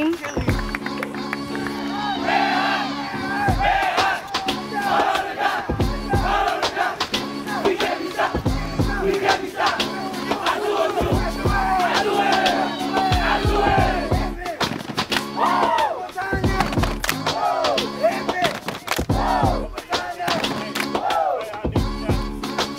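Youth football team shouting and chanting together in a huddle, many voices at once, over background music.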